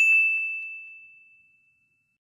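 A single bright ding sound effect, struck once and fading out over about a second and a half.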